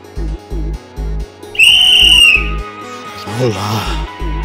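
Background music with a repeating low bass pulse; about a second and a half in, a loud, high whistle sounds for under a second, dipping slightly in pitch as it ends.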